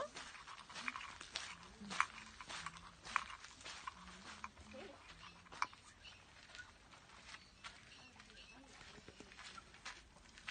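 A dog sniffing its way around a tractor tyre during a scent search, with many short, quiet clicks and scuffs, denser in the first few seconds.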